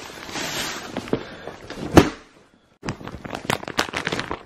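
Plastic shopping bag rustling as a hand digs through it, with a sharp snap about halfway. After a short pause, the clear plastic packaging of a bedsheet set crinkles in quick crackles near the end.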